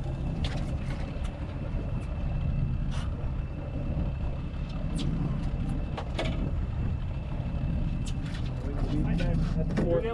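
Boat engine running steadily under the trolling boat, a low hum, with a faint steady high whine until about eight seconds in and scattered clicks and knocks from gear on deck.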